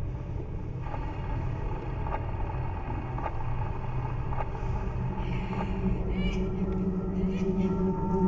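Low, steady rumbling drone of a horror film's score and sound design, with a few faint clicks and a faint high wavering sound in the second half.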